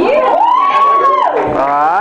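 A person's long, drawn-out yell into a microphone: it rises, holds for about a second and falls away, followed by a few short rising whoops near the end.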